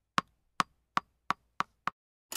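Typewriter keystroke sound effect: six single sharp clicks about a third of a second apart, with nothing between them.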